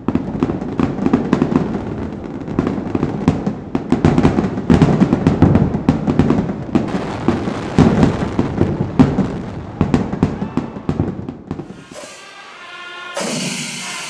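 Kerala temple-festival fireworks (vedikettu): a dense, rapid barrage of firecracker bangs going off one after another without pause. Near the end the bangs die away and music comes in.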